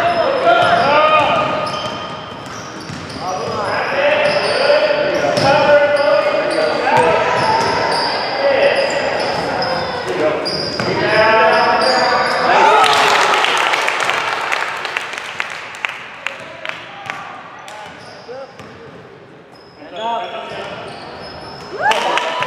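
A basketball being dribbled on a hardwood gym floor, about two bounces a second for several seconds in the second half, with players' voices calling out across the court in an echoing hall.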